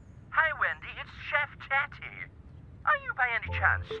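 Cartoon dialogue: a person's voice speaking in two short phrases, with background music coming in near the end.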